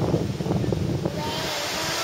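Low rumbling noise, like wind buffeting the microphone, for the first second. Then, from about a second in, the steady hiss of ocean surf breaking on a beach.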